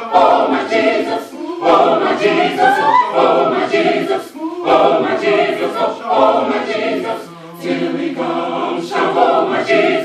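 Gospel choir of mixed men's and women's voices singing together in sustained phrases, with short breaths between them.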